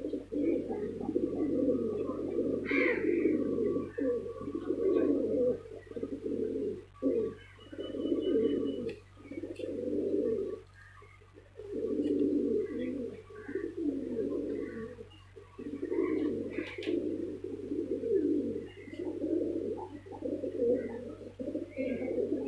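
Domestic pigeons cooing, many birds calling over one another in low phrases of a second or two, almost without a break. There are a few short pauses, the longest about halfway through.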